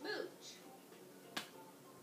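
A baby's brief vocal sound at the start, then a single sharp click a little past halfway.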